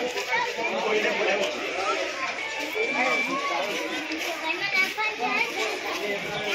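Crowd chatter: many voices, children's among them, talking over one another at once with no single clear speaker.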